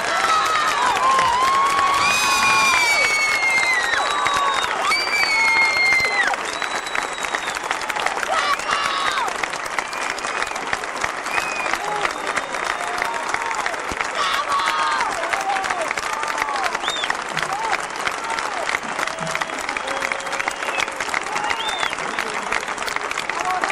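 Large concert audience applauding, with cheers and shouted calls scattered through it. It is loudest in the first six seconds, then carries on a little lower.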